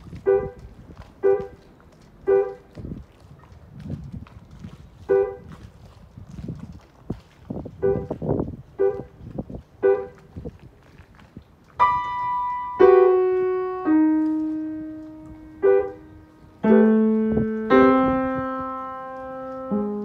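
Piano music. It opens with short, quiet notes struck at a steady pace, then about twelve seconds in turns to louder held chords that ring and slowly fade.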